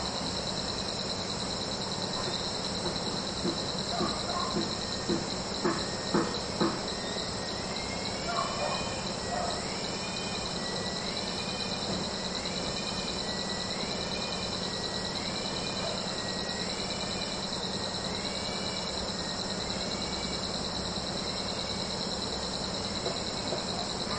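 Steady high-pitched insect chorus, with a bird repeating a short rising-and-falling call about once a second through the middle stretch. A handful of soft knocks come in the first seven seconds.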